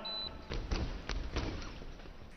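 Fencers' feet stamping and thudding on the piste as they advance and lunge in a foil bout: a quick, irregular run of about ten thuds in a little over a second. A brief high beep sounds at the very start.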